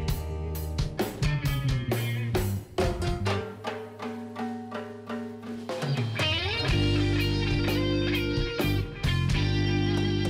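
Reggae band playing an instrumental passage on electric guitars, bass guitar and drum kit. The drums are busy for the first few seconds, the band drops to a sparser, quieter stretch in the middle, and the full band comes back in about seven seconds in.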